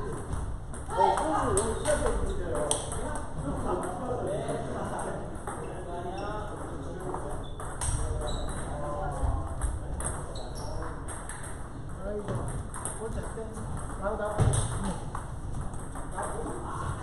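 Table tennis balls clicking off paddles and tables in rallies on several tables, under people's voices talking.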